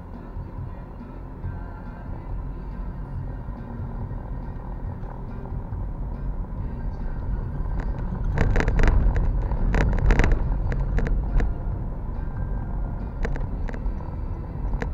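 A car's engine and tyre rumble heard from inside the cabin as it drives off and turns, growing louder through the stretch. A clatter of sharp knocks and rattles comes from about eight to eleven seconds in, as the car crosses the intersection.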